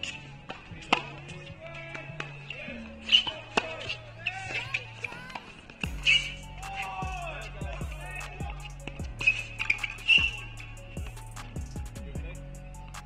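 Background music over a tennis rally on a hard court: sharp ball strikes off the rackets every one to three seconds, with short squeaks of shoes on the court between them.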